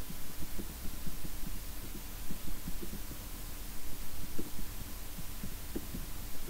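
Computer keyboard typing: a run of irregular, dull keystroke thuds, a few per second, over a steady low electrical hum.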